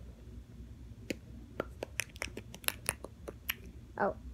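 A quick, irregular series of about a dozen sharp clicks or snaps, starting about a second in.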